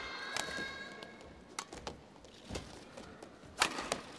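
Badminton rally: a series of sharp racket strikes on the shuttlecock, roughly one a second, over a quiet arena hall.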